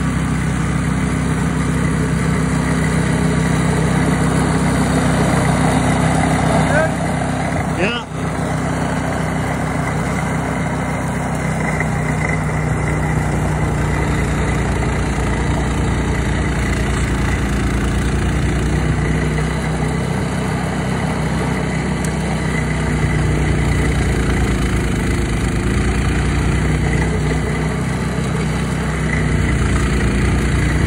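Walk-behind snowblower engine running steadily as the machine clears and throws snow, with a brief dip in level about eight seconds in.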